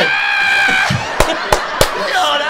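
A man's laugh held as a high-pitched squeal for about a second, then three sharp hand claps in quick succession.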